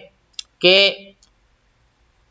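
A man's voice says one short word, with a faint, sharp click just before it; the rest is a quiet pause in the talk.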